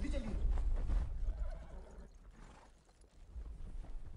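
A horse whinnying at the start, its pitch falling, over a heavy low rumble; the sound dies down from about a second in.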